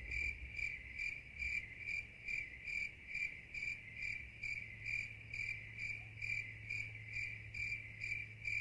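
A cricket chirping: even, high-pitched chirps repeating steadily a little over two times a second.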